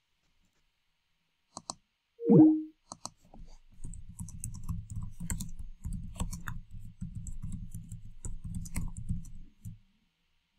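Typing on a computer keyboard: a quick, dense run of keystrokes lasting about six seconds. It is preceded by a single click and a brief falling tone about two seconds in.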